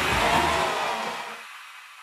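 Crackle and rumble of a fireworks display dying away, fading out over about a second and a half.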